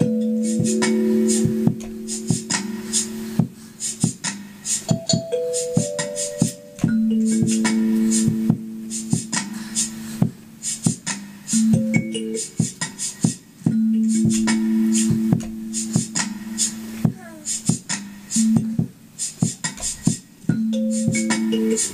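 Hugh Tracey box-resonator kalimba plucked in a quick repeating pattern, looped and echoed through a loop station and delay pedal. Long held low notes sound underneath the plucks and change pitch every second or few.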